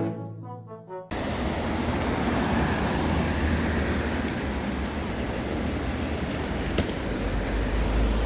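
Instrumental background music for about the first second, then cut off abruptly by steady roadside street ambience: a constant hiss of traffic over a low rumble, with one brief click near the end.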